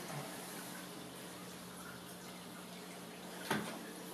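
Quiet room tone: a faint steady hiss under a low hum, broken by a single sharp click about three and a half seconds in as the GoPro and its handheld grip are handled.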